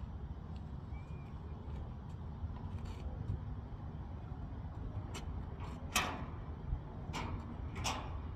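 Sharp metal clanks and knocks from gear being handled on a car-hauler trailer, a handful spread through the second half, the loudest about six seconds in, over a steady low rumble.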